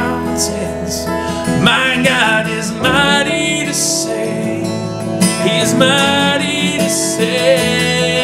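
A man singing a slow worship song, with a wavering hold on his long notes, over strummed acoustic guitar and keyboard.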